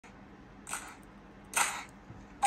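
Two short clicks about a second apart, the second louder: keys pressed on a laptop keyboard to turn the volume up.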